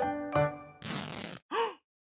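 A short piano phrase of background music dies away, then a person sighs: a breathy exhale followed by a brief voiced sound.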